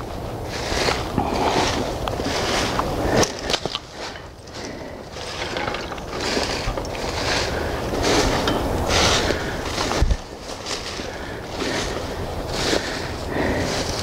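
Footsteps crunching through dry fallen leaves and brushing through undergrowth at a steady walking pace, about three steps every two seconds, with a sharp knock about ten seconds in.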